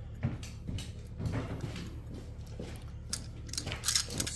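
Light metal clicks and scrapes from a steel hole-saw arbor being handled and fitted into a 3-5/8-inch hole saw, irregular, with a sharper click near the end.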